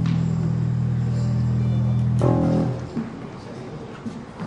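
Amplified guitar through a stage amp: a low note held ringing, then a new note struck a little over two seconds in that dies away within about half a second, leaving only faint stage noise.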